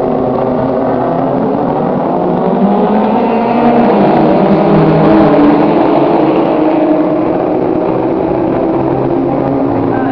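A field of Nissan GT-R race cars accelerating away at a race start, many engines revving at once with rising pitch. The sound is loudest about five seconds in as the pack passes the stand, then eases.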